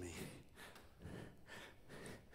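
Near silence: a man's faint breathing in a pause between spoken phrases, over low room tone.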